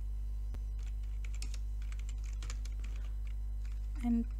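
Computer keyboard keys clicking as a command is typed, a quick run of keystrokes starting about a second in, over a steady low hum.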